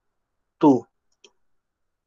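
A short spoken syllable, then a single faint click about a second later from the computer being used to type into the spreadsheet.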